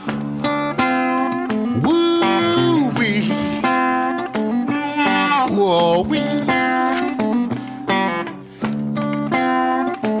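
Acoustic blues guitar playing an instrumental passage: rhythmic plucked notes, with a few notes that slide in pitch, the longest rising and held about two seconds in.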